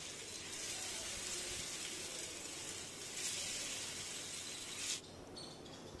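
Paneer cubes coated in cornflour paste sizzling as they shallow-fry in hot oil, a steady hiss that drops away abruptly about five seconds in.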